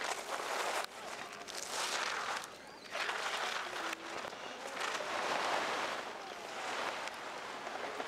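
Giant slalom skis carving and scraping on hard-packed snow through successive turns, a hiss that swells with each turn and drops back between them.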